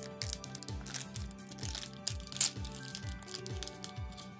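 A blind-bag wrapper crinkling as it is torn open and handled, in short rustles, over background music with a steady beat.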